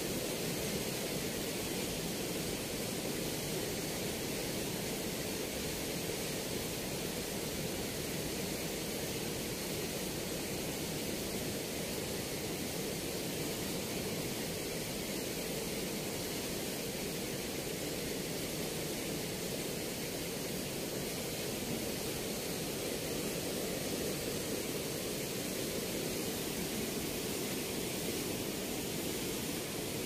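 Steady rushing of water churning out below a river weir's sluice gates, an even noise with no breaks.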